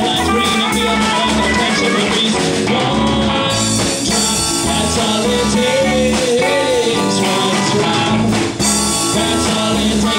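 Live band playing an instrumental passage: electric guitars over bass and drums, with a steady, even beat.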